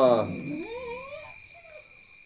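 A short animal call that wavers and rises in pitch, with a brief second call near the end, over a steady high-pitched insect chirring.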